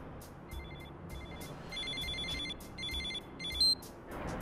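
Smartphone ringtone for an incoming call: trilling electronic beeps in short bursts, with a longer burst about two seconds in and a single louder, higher beep near the end.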